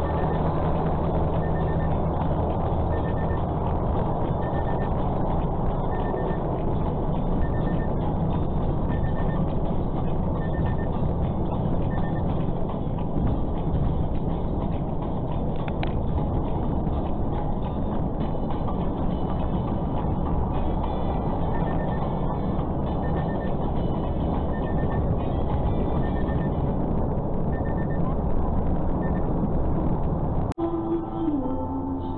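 Steady engine and road noise heard from inside a moving truck's cab. Over it a faint electronic beep repeats, a quick cluster of pips about every one and a half seconds, for the first dozen seconds and again through the last third.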